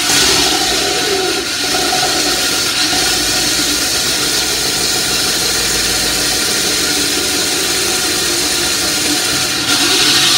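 Hand-held concrete cut-off saw running steadily under load, its blade cutting into a concrete floor, with a hiss of high-pitched grinding over the motor.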